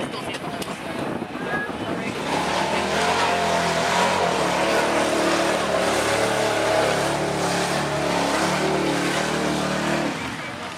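Pickup truck engine driving hard through a mud pit. It climbs in revs about two seconds in, then is held loud and steady until the end.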